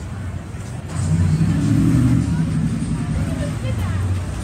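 A motor vehicle passing close by on the street, its low engine and road rumble swelling about a second in and then easing off, with people's voices in the background.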